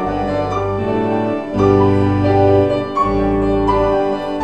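Grand piano played solo: slow sustained chords over deep bass notes, changing every second or two.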